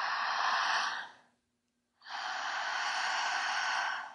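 A woman's strong, deliberate breathing through the open mouth, paced for breathwork: a long breath in ends about a second in, and after a short pause a long breath out of about two seconds follows.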